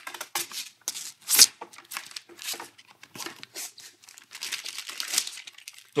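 Plastic packaging crinkling and rustling as hands handle a laser engraver's acrylic shield, in irregular bursts with one louder crackle about a second and a half in.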